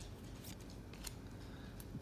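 Faint rustle of glossy trading cards sliding against one another in the hand as the front card is moved to the back of the stack, with a few soft ticks of card edges.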